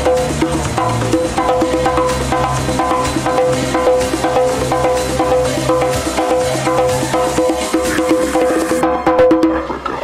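House music from a DJ mix, built on a repeating pitched, wood-block-like percussion loop over a steady beat, with a live hand drum played along. Near the end the treble drops out for about a second, as if filtered in the mix.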